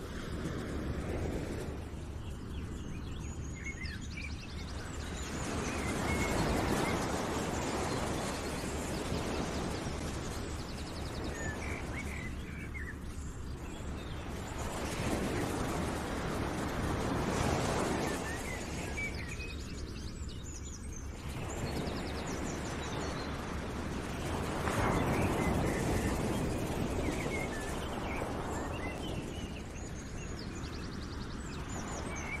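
Background ambience of outdoor sounds: a broad rushing noise that swells and fades every few seconds, with scattered small bird chirps over it.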